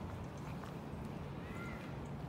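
Footsteps crunching on a dirt park path as the person filming walks, over a low steady rumble on the microphone. A faint short high whistle-like note sounds near the end.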